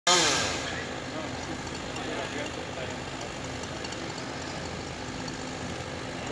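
Two-stroke chainsaw engine dropping from high revs in the first half-second, its pitch falling, then idling steadily.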